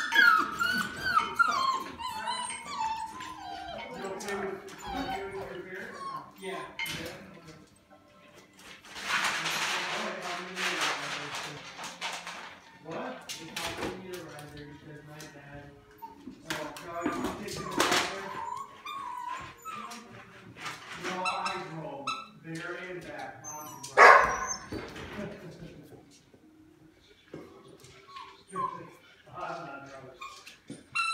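Golden retriever puppies whining and yipping in many short, gliding calls as they play. A scratchy rustle runs for a few seconds about a third of the way in, and one sharp, loud yelp comes about 24 seconds in.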